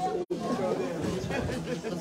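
Indistinct chatter of several people in a large hall, with a brief cut-out of the sound about a quarter second in.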